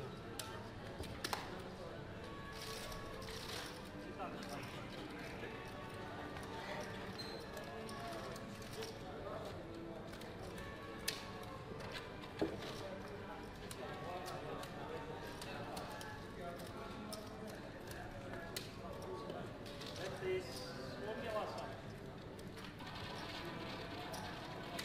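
Busy casino room ambience: indistinct background chatter and music, with a few sharp clacks of roulette chips as the dealers stack and sort them.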